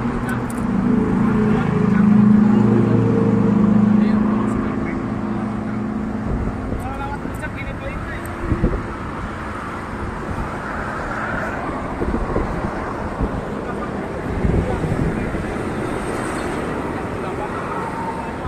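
Road traffic: a vehicle engine hums, loudest a couple of seconds in and fading away by about five seconds, then a steady traffic background with a few soft knocks.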